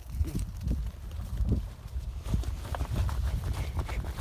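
Running footsteps on grass, with irregular thuds several a second and the jolting and rustle of a camera carried by the runner.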